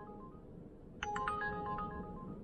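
Uber Eats driver app's new-order alert chiming from a smartphone: a quick run of bright ringing notes that fades at first and sounds again about a second in, signalling an incoming delivery offer.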